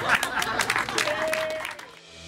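A group of people clapping, with a short held cheer about a second in; the clapping fades away near the end.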